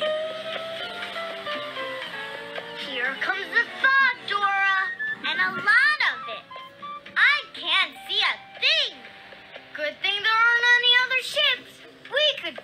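Cartoon soundtrack music with held notes, joined after a few seconds by many quick rising-and-falling pitched vocal cries.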